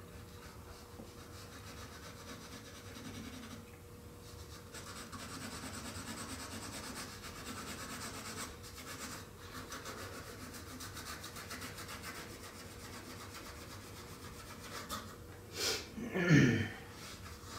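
Colored pencil shading on paper: a soft, scratchy rubbing of the pencil lead as strokes are hatched back and forth. It stops briefly about four seconds in and again around eight to nine seconds, then resumes. A short louder noise comes just before the end.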